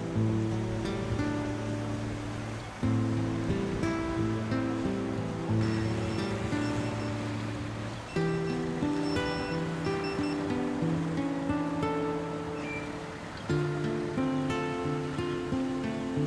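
Background music: strummed acoustic guitar chords, a new chord struck every few seconds and fading between strikes.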